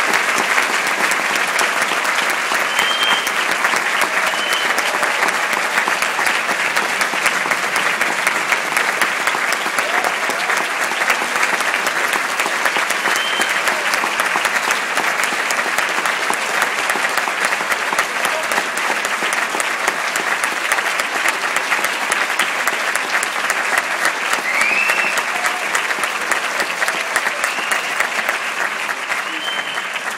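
Large audience applauding steadily, with a few short high calls over the clapping; it starts to die down near the end.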